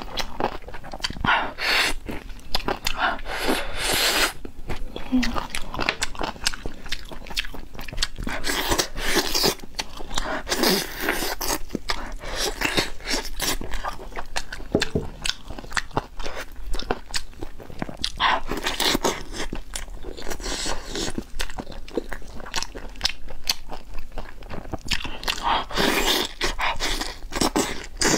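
Close-miked eating sounds: a person biting into and chewing braised chicken drumsticks, and pulling the meat apart, heard as an irregular run of mouth clicks and smacks.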